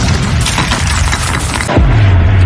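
Film sound effect of an underground mine blast: a loud, dense rumble of blast and falling debris, with dramatic score under it and a deep low drone coming in near the end.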